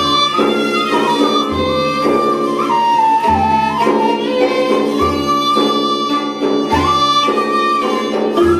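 Live Turkish Sufi (tasavvuf) music played by a small ensemble: a held melody line that slides between notes, over a deep beat about every second and a half to two seconds.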